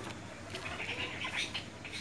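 Faint animal calls, a few short gliding tones, over low background noise.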